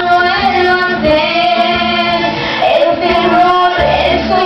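A woman singing a Spanish-language cumbia into a handheld microphone over a backing track.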